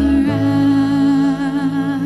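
Live worship music: a singer holding one long note over sustained keyboard chords.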